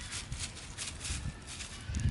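Steps crunching in a thick layer of dry fallen leaves: several short, irregular crackles over a low rumble.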